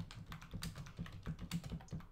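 Typing on a computer keyboard: a fast, uneven run of key clicks, about a dozen in two seconds.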